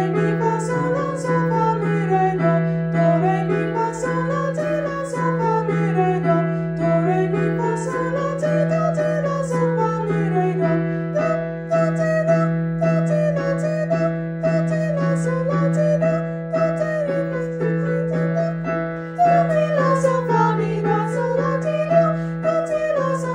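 A voice singing a vocal exercise with piano: runs that rise and fall, repeated about every four seconds, over a low held piano note.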